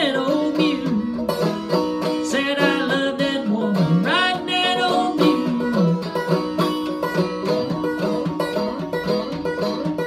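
Resonator banjo picked in a quick, rolling bluegrass style, with bent and sliding notes, playing the instrumental close of a country song.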